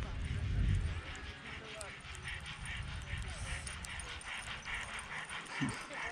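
Sled dogs of an approaching team yipping and barking faintly, over a quick, even patter as the team runs across the snow. A low rumble fills the first second.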